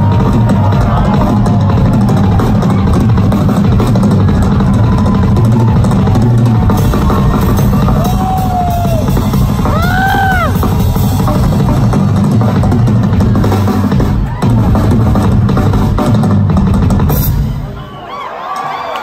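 Band music driven by a loud drum kit and heavy bass. Two short pitched glides rise and fall about eight and ten seconds in. The music drops in level near the end.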